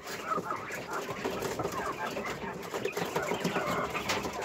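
Flock of caged Texas quail, a white meat breed of Japanese quail, calling, with many short chirps overlapping.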